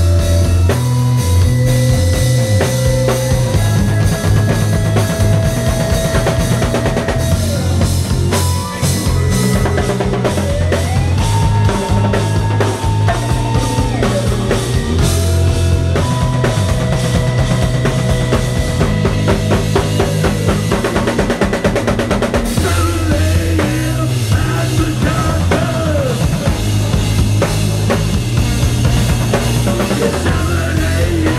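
Live funk-jazz band playing an instrumental passage: a busy drum-kit groove with snare and rim hits and a moving electric bass line. A trombone plays held and sliding notes over it.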